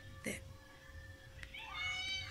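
Near the end, a short high-pitched call whose pitch rises and then levels off, like a cat's meow, over a faint steady hum.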